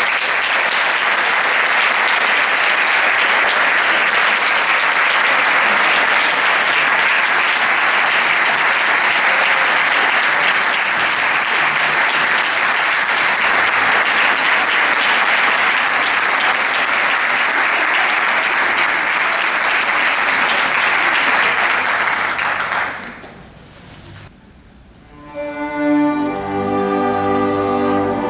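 Audience applauding steadily for about twenty-three seconds, then dying away. Just before the end the orchestra starts playing again.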